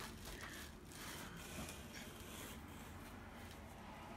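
Faint rustling of cloth as a shirt is pulled from a laundry basket and shaken open by hand.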